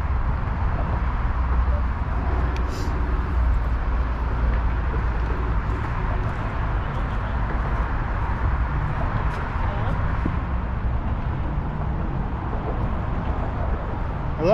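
Wind rumbling steadily on the microphone, a loud, even low-pitched noise.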